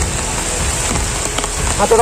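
Heavy rain falling steadily, an even hiss of downpour. A man's voice comes in right at the end.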